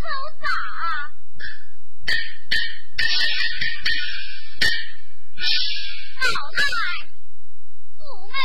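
Chinese opera performance: a female performer's sung line in the first second, then a series of sharp percussion strikes with high-pitched instrumental accompaniment, and her voice returning near the end.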